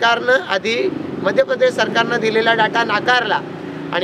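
A man speaking Marathi in a public address, with a vehicle passing in the background, its low rumble building about a second in and fading near the end.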